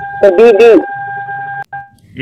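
A steady electronic beep: one unchanging high tone held for about a second and a half, cutting off abruptly and sounding again briefly near the end.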